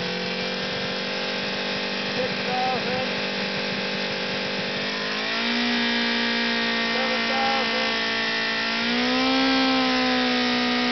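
Honda CB550's air-cooled inline four-cylinder engine held at high revs, around 5,000 RPM, running steadily and then stepping up in pitch twice, about five seconds in and again near the end.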